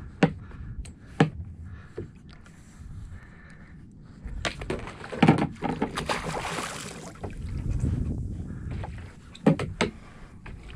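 A Spanish mackerel thrashing and splashing at the surface alongside a fishing kayak, loudest about six seconds in, over a low rumble of water against the hull. A few sharp knocks sound: one at the start, one about a second in, and one near the end.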